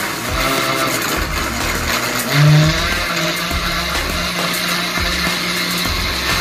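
Electric countertop blender running steadily, blending a pineapple and orange juice mix, with a brief louder low tone about two and a half seconds in.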